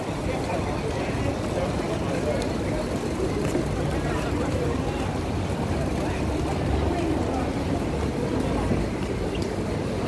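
Busy street-market ambience: indistinct chatter of passing shoppers over a steady low rumble of traffic.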